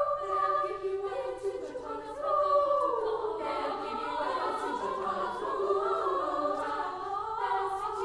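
Girls' choir singing a cappella in several parts, voices holding and shifting sustained chords, the texture growing fuller from about three seconds in.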